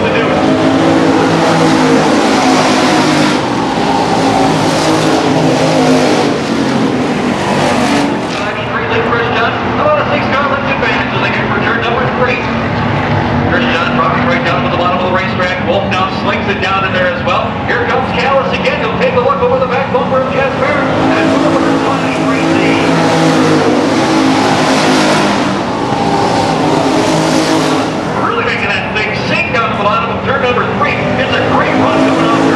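Stock car engines running hard at racing speed as cars lap the track and pass by. The engine noise swells loudest twice: through the first several seconds and again about two-thirds of the way through.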